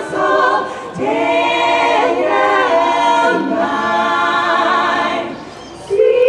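Group of women singing together into microphones, in phrases with short breaks about a second in and near the end.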